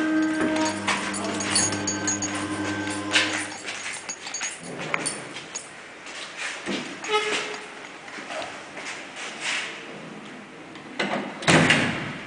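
Old freight lift: a steady machine hum from its drive stops about three and a half seconds in as the car comes to rest. Scattered clicks and knocks follow as the hinged landing door is opened and passed through, then a loud thud near the end as the door shuts.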